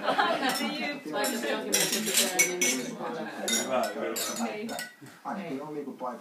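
Champagne flutes clinking against each other many times in a group toast, in quick irregular touches, amid overlapping voices.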